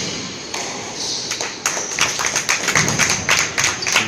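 Quick, irregular sharp taps and thuds on a squash court, from the ball being struck and hitting the walls and from the players' feet on the wooden floor. They come thickest in the second half.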